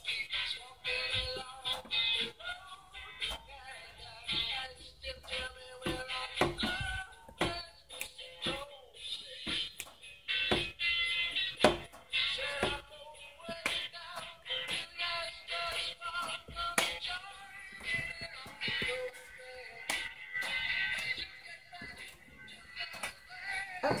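Music with singing from an FM station, played through the small speaker of an Elenco Snap Circuits FM radio kit. It sounds thin, with little bass, and is broken by scattered clicks.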